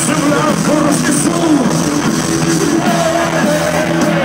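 Live punk rock band playing loudly on stage, electric guitar and drums with a voice singing over them, recorded from within the audience.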